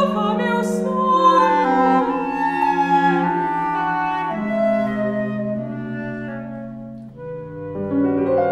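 Contemporary chamber music played live: slow, sustained woodwind lines led by clarinet step gradually downward over held low cello notes, and the piano comes in near the end.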